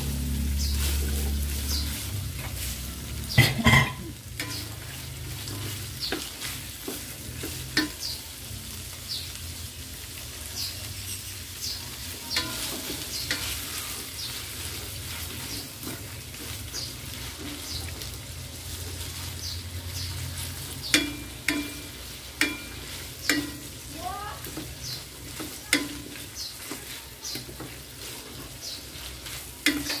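Ground pork and julienned carrots sizzling in a nonstick wok while a wooden spatula stirs and scrapes through them, with irregular clicks against the pan. Two loud knocks come about three and a half seconds in.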